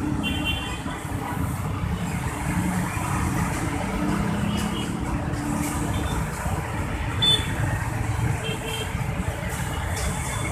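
Dense city road traffic: the engines of motorcycles, cars and a coach idling and creeping forward, making a continuous low rumble.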